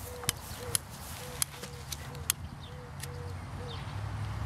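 Long-nosed utility lighters clicking several times, sharp separate clicks, as they are triggered to light the corners of a newspaper kite. Underneath, a faint short note repeats about three times a second.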